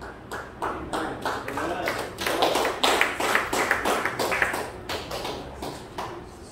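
A steady run of sharp taps or claps, about three to four a second, with voices over them that are loudest in the middle.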